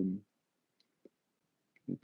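A man's voice trails off, then a pause with a couple of faint small clicks, and he starts speaking again near the end.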